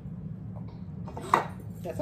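Cooking oil being poured from a plastic jug into a glass measuring cup, with one sharp clink of kitchenware a little over a second in, over a steady low hum.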